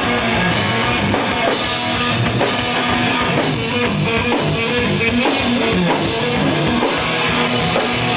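A metal band playing live: electric guitar and drum kit, loud and continuous.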